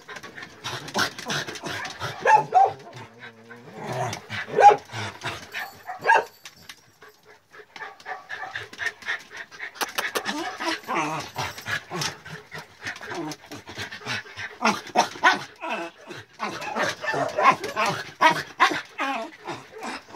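Several dogs jostling together in a small concrete pen: a dense patter of short clicks and scuffles, with brief high whines and yips about two and four and a half seconds in and again later.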